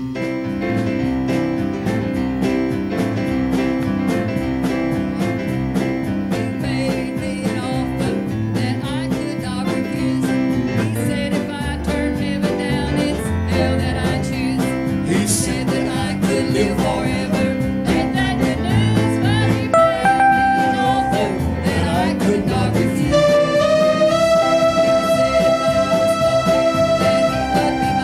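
Live gospel song in church: keyboard and drums playing a steady beat, with a woman singing lead into a handheld microphone and holding long notes near the end.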